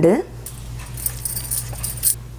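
A woman's voice trails off at the start. Then faint jingling and a light clink just at the end as crushed garlic is tipped from a small bowl into a steel mixing bowl, with glass bangles on the wrist jingling, over a low steady hum.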